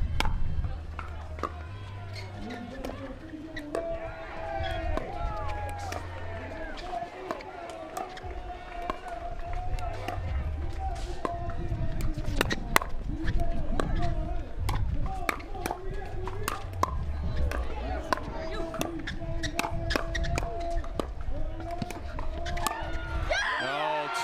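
Pickleball rally: paddles striking a hard plastic ball in many sharp pops, over background music.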